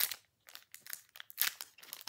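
Foil booster-pack wrapper crinkling as it is handled, with a loud crackle at the start and another about a second and a half in.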